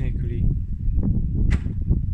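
A single sharp click about halfway through, over a steady low rumble of handling or wind noise on the microphone.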